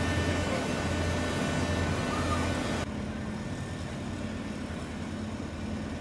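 Diesel engines of an asphalt paver and a dump truck running steadily under paving work, with a strong low hum. About three seconds in the sound drops abruptly to a quieter, steadier engine running.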